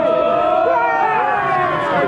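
Voices at a football match: a long, steady held note runs throughout, with short calls and shouts breaking in around it.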